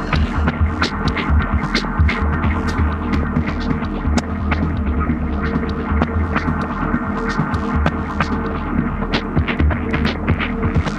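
Experimental electronic music: a steady low throbbing drone with scattered crackles and clicks over it and no clear beat.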